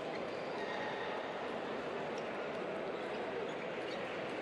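Steady background din of a large table tennis hall: a murmur of many distant voices, with faint clicks of balls from play at other tables.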